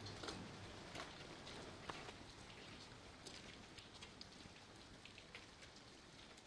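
Faint, irregular ticks and scuffs over a low steady hum: footsteps and horse hooves of a procession walking past on the street.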